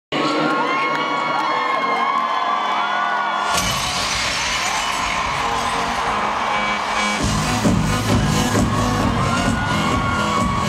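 Stadium crowd screaming and cheering over loud concert music from the PA. A loud crash comes in about three and a half seconds in, and a heavy bass beat starts around seven seconds.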